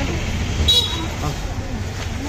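Street ambience: a steady low rumble of traffic with indistinct voices, and one short, high-pitched horn toot less than a second in.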